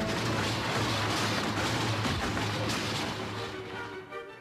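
A loud clattering crash of metal trash cans being knocked over and tumbling. It starts suddenly and rattles on for about three and a half seconds, then fades, over background score music.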